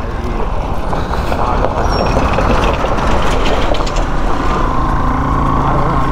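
A red state-transport bus passing close by on a narrow gravel road: the engine and the crunch of tyres on loose stones swell into a rough rush over the first few seconds. After about four seconds a steadier engine note with a thin steady whine takes over.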